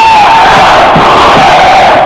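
A huge crowd of demonstrators shouting together, loud and dense, with one wavering higher tone rising and falling above the mass of voices.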